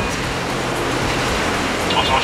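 Harrier GR9 jump jet's Rolls-Royce Pegasus turbofan running at hover power, a steady jet noise as the aircraft hangs over the carrier deck for a vertical landing.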